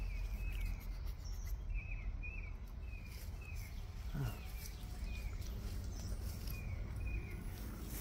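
Outdoor ambience with a small bird chirping: short, slightly falling chirps repeated about every half second, over a low rumble. One brief falling sound comes about four seconds in.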